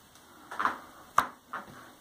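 A few brief handling knocks in a quiet, small tiled room, the loudest a single sharp click just past a second in.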